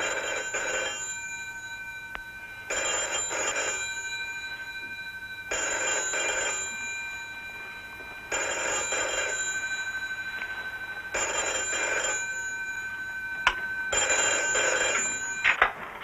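Telephone bell ringing: six rings, each about a second long, repeating about every three seconds. Near the end a couple of sharp clicks as the handset is picked up.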